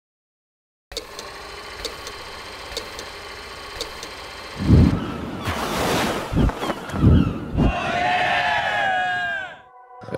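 Layered sound effects opening a film: faint ticks about once a second over a low hiss, then a deep boom about halfway through, a rushing whoosh, a few low thumps, and falling pitched glides that fade out just before the end.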